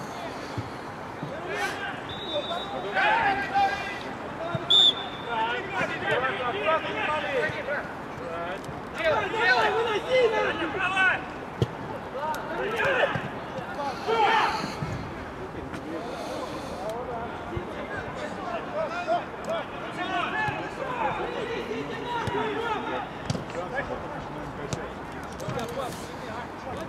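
Indistinct shouts and calls of players across an outdoor football pitch, with occasional thuds of the ball being kicked.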